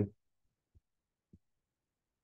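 Near silence as a spoken word trails off at the start, broken by two faint, short low thumps a little over half a second apart.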